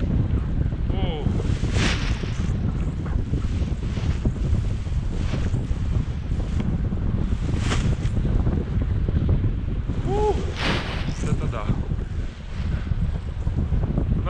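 Airflow of a paraglider in flight rushing over the camera's microphone: steady low wind noise, with a few brief louder gusts.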